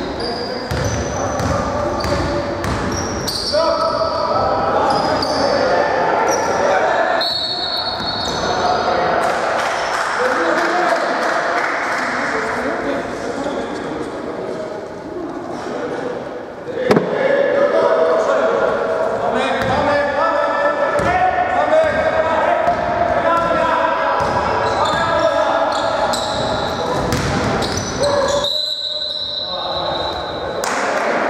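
A basketball bouncing on a hardwood gym floor during play, with players' voices calling out, echoing in a large hall. One sharp, loud impact comes about seventeen seconds in.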